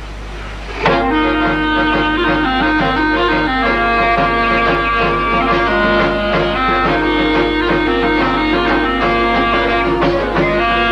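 Aromanian (Vlach) polyphonic male folk singing starts suddenly about a second in. Several voices hold long, sustained notes that shift step by step, in the drone-based multi-part style.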